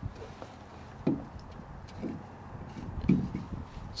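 Three soft, low thumps about a second apart, with a few faint ticks between them.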